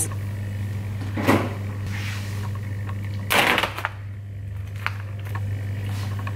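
Kitchen handling sounds: a refrigerator door being opened and shut and raw chicken being taken from its plastic tray. Two short noises, about a second in and again just after three seconds, the second longer and louder, over a steady low hum.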